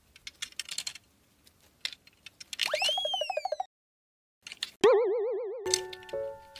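Cartoon sound effects: a whistle swoops up and falls away about halfway through, then after a short silence comes a loud wobbling boing, the loudest sound here. Background music comes back in near the end.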